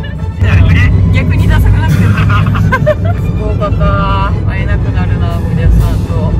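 Voices and background music over a steady low vehicle rumble, which gets louder about half a second in.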